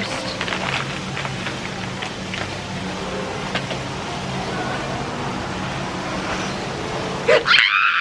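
Steady outdoor background hum with faint music under it. Near the end comes a woman's brief, excited scream, which cuts off suddenly.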